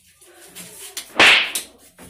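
A short, loud hiss from an aerosol spray can sprayed at a person's head, a single burst lasting about a third of a second just past the middle.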